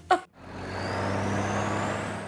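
Road traffic ambience: a steady hum of vehicle engines and road noise that fades in about half a second in, after a brief sharp sound at the very start.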